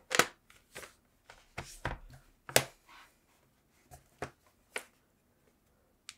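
A laptop being handled: a scattered run of short knocks and clicks as it is turned over, set down on the desk and its lid opened, the loudest at the very start and about two and a half seconds in.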